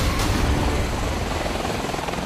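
MV-22 Osprey tiltrotor hovering low in helicopter mode: the steady noise of its two proprotors and engines.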